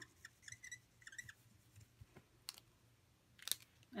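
Faint squeaks and scratching of a brush-tip ink marker scribbled across a clear acrylic stamping block, followed by a few light clicks and a sharper tap about three and a half seconds in.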